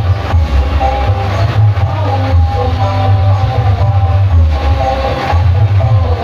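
Loud music played through a truck-mounted speaker stack, with a heavy bass line and a melody above it.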